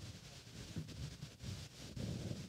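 Faint, uneven low buffeting of strong gusting wind on the microphone.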